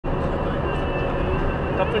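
Steady low rumble of a car on the move, heard from inside the cabin, with a man's voice starting near the end.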